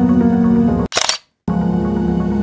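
Background music that cuts out about a second in for a single camera shutter release. A brief silence follows before the music resumes.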